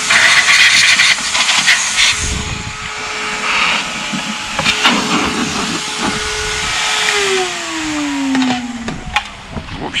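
Canister vacuum cleaner run in blow mode, its air jet hissing loudly through a narrow nozzle into the back of a guitar combo amplifier to blow out the dust for the first two seconds. Its motor then hums steadily, and about seven seconds in it is switched off, its pitch falling as it spins down.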